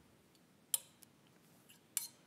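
Two light, sharp clicks about a second apart, with a fainter tick between them, over quiet room tone.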